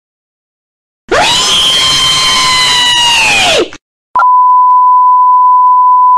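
A loud, harsh, distorted sound that swoops up in pitch, holds and drops away, then a loud steady 1 kHz test-pattern tone that sounds with the TV colour bars.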